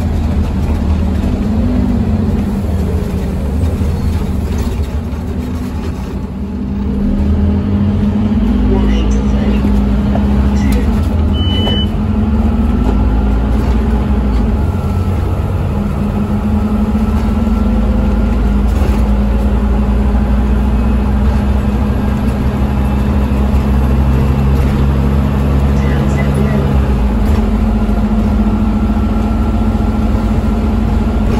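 Scania OmniCity bus's diesel engine heard from inside the passenger cabin, pulling away and picking up speed about six seconds in, then running steadily under load.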